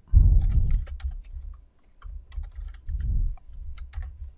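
Computer keyboard keys clicking in a quick, uneven string as a short command is typed, with a low rumble near the start and again about three seconds in.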